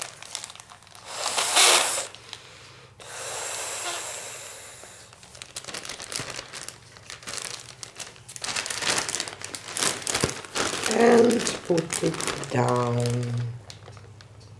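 Plastic zip bag crinkling and crackling as it is handled, with a breathy rush of air blown into it to open it about three seconds in.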